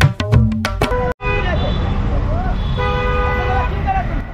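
Percussive music that cuts off about a second in, then busy city street traffic: engines rumbling steadily, vehicle horns honking with a long honk near the end, and voices of passers-by.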